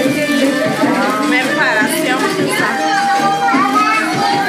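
Background music with voices over it.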